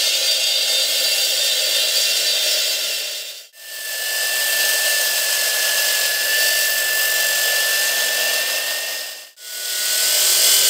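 AGP C14 handheld 14-inch electric concrete saw with a diamond blade cutting wet into a concrete slab, the blade running at full speed. The sound fades almost to nothing and comes back twice, about three and a half seconds in and near the end. After the first dip a steady high whine runs over the cutting noise.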